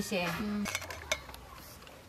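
Stainless steel ladle and plates clinking as rice is served, a few light clinks about a second in.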